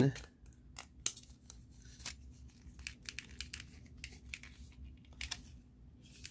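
Irregular small snips and clicks of a cutting tool trimming away plastic support pieces inside a remote control's case.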